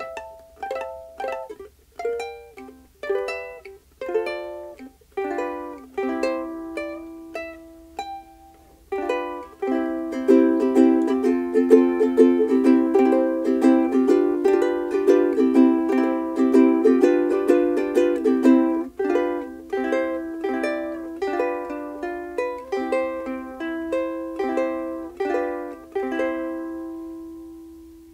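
A Kiwaya KPS-1K soprano ukulele with a Hawaiian koa body being played, with a clear, clean tone. For about the first nine seconds it is picked note by note. It then switches to rapid strummed chords, and slows to separate chords near the end, where a last note rings out and fades.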